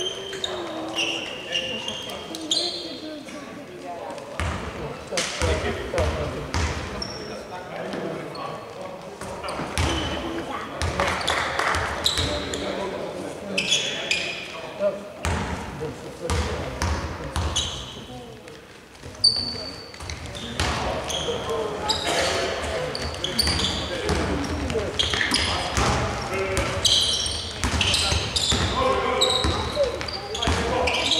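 Basketball game sounds in a large, echoing sports hall: a basketball bouncing on the wooden court, sneakers squeaking, and players' indistinct voices and calls.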